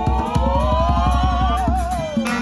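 Live acoustic street band of saxophone, violin and hand drum playing a tune: a wavering, sliding melody line held over quick drum taps.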